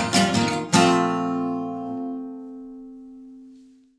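Acoustic guitar strummed: two quick strums, then a last chord about three quarters of a second in that is left to ring and slowly dies away to nothing by the end.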